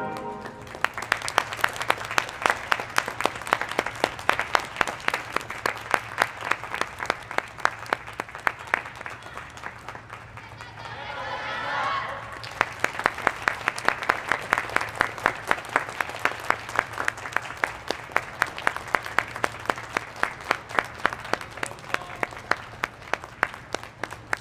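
An audience clapping in unison, about three claps a second, after a marching band's brass piece ends. A voice calls out briefly about halfway through, and the rhythmic clapping then resumes.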